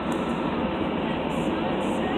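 Steady road noise inside a moving car's cabin: an even rumble of tyres and engine while driving.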